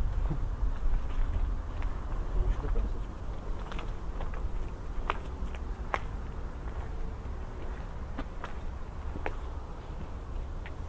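Wind buffeting a microphone outdoors with a steady low rumble, and scattered light clicks and rustles of slow footsteps underfoot.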